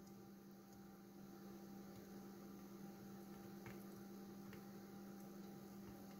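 Near silence: a faint, steady electrical mains hum, with a couple of faint ticks in the middle.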